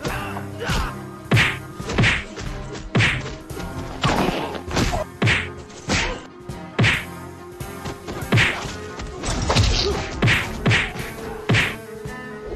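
A run of martial-arts film punch and kick sound effects: more than a dozen sharp whacks, roughly one a second, over a faint steady low background tone.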